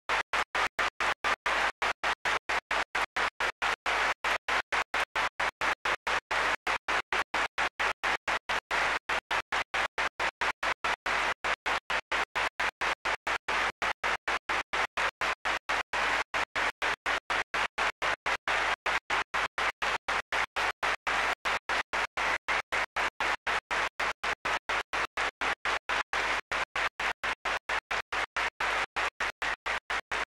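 Audience applause, heard as a steady pulsing about three times a second.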